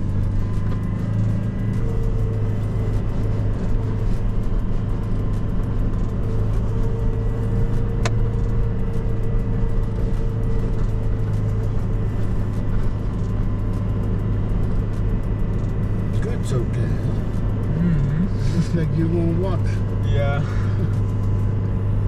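Car engine running steadily under load as the car climbs a rough gravel track, a constant low drone heard from inside the cabin.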